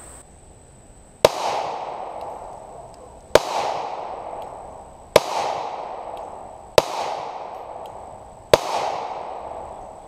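Honor Guard 9mm compact pistol firing five single shots of 115-grain FMJ ammunition, slow and evenly paced about two seconds apart, each shot trailing off in a long echo.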